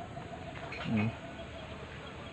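Faint bird calls in a rural yard: a thin held note and a few brief chirps. A short low vocal sound comes about a second in.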